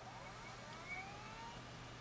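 Old IDE hard drive spinning up after power-on: a faint whine that climbs slowly in pitch, several tones rising together as the platters come up to speed.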